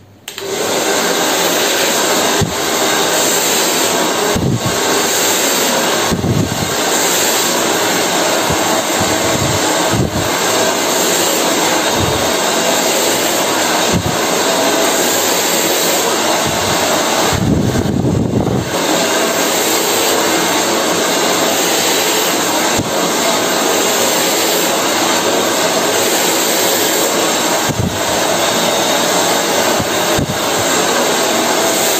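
Hand-held hair dryer switched on just after the start and blowing steadily, with brief low puffs of air every couple of seconds as it is worked through the hair with a round brush.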